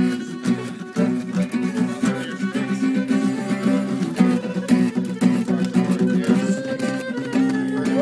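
Guitar and fiddle playing an instrumental passage: the guitar keeps a strummed chord rhythm while the fiddle plays a gliding melody over it.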